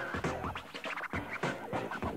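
Hip-hop beat with DJ turntable scratching: quick back-and-forth cuts of a recorded sample, several a second, over a steady bass line.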